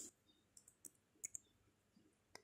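Near silence with a few faint, short clicks of computer keys and mouse as a font size is typed in.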